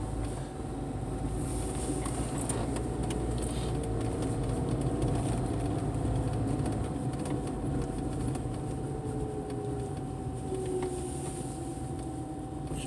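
A car driving, heard from inside the cabin: a steady low engine and road rumble with a faint constant tone above it.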